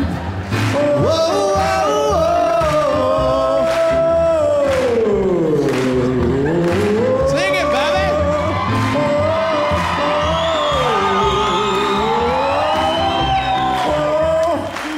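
Live music: a man singing long held notes that slide down and back up in a vocal run, twice, over piano and a steady beat.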